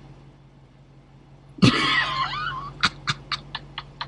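A person laughing: a sudden high, wavering burst about one and a half seconds in, then a run of short breathy laughs that fade away.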